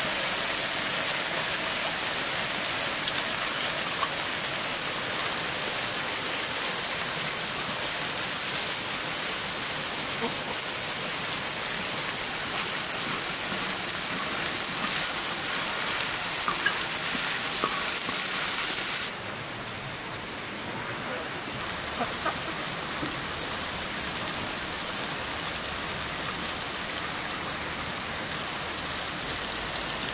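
Chopped tomatoes and peppers sizzling on a hot iron sadj griddle, a steady hiss with a few light spatula scrapes. The sizzle drops suddenly to a softer level about two-thirds of the way through.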